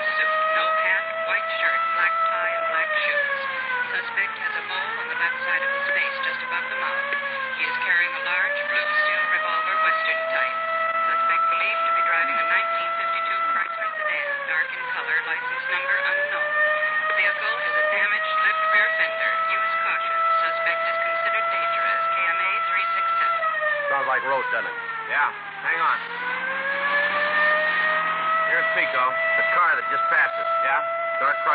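A wailing siren holds a steady note, then sags and winds back up several times, with one deep drop and climb near the end, over car engine and road noise. It is a radio-drama sound effect of a police car in pursuit, heard through a narrow old broadcast recording.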